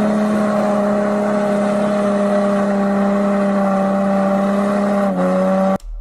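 Car engine held at high revs during a burnout, one steady pitch that dips slightly about five seconds in and then cuts off suddenly near the end.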